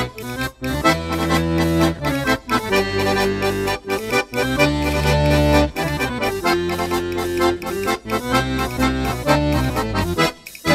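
Accordion music in Portuguese popular dance style: a melody played over held bass notes.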